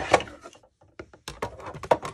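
A series of short plastic clicks and knocks from a hand-cranked Sizzix embossing machine as the embossing folder on its platform is fed in and rolled through the rollers.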